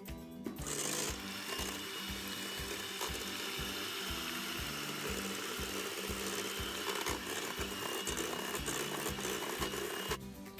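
Electric hand mixer running steadily, its beaters whisking eggs and sugar in a stainless steel bowl, switching on about half a second in. Background music with a steady beat plays underneath.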